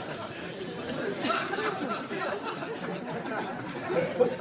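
Indistinct chatter: several voices murmuring, with no clear words.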